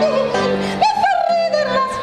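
Music: a high voice singing a melody with sliding, bending notes over plucked acoustic guitar.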